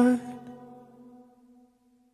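The end of a pop song: a last sung vocal note, held briefly over the music, then fading out over about a second and a half.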